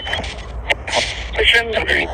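Spirit box sweeping rapidly through radio stations: choppy snatches of broadcast voices a fraction of a second long, cut up by sharp clicks and bursts of static over a low hum. One fragment is read as "fishing buddy."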